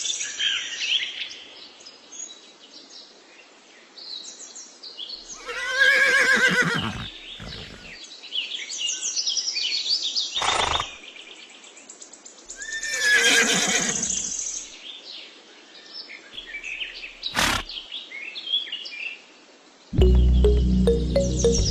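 Two horse whinnies, each about a second and a half long and some seven seconds apart, over faint high bird chirps. Two sharp clicks fall between and after them.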